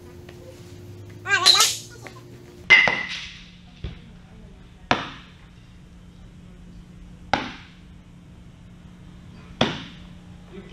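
Thrown practice balls striking young catchers' gear and mitts during a blocking drill: five sharp knocks a second or two apart, each dying away quickly. Before the first knock a short, high, wavering voice is heard.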